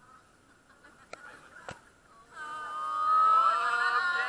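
Several people's high-pitched voices rise into a drawn-out squeal and laughter about two seconds in, after a quiet start with two light clicks.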